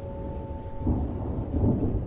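A low rumble of thunder in a music soundtrack, under a held musical chord. The chord drops away about a second in, and the rumble swells louder toward the end.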